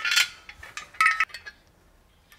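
Two short metallic clinks about a second apart, each with a brief ring: metal sofa-leg hardware, long screws and an Allen key, knocking together as the legs are fitted to the sofa base.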